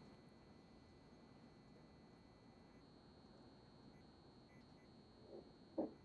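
Near silence: room tone with a faint steady high-pitched tone, and two brief soft sounds near the end.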